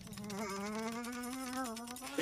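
A sustained buzzing tone with overtones, drifting slowly upward in pitch and wavering slightly near the end.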